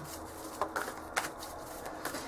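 A deck of cards being shuffled and handled by hand: a few soft snaps of the cards in the first half.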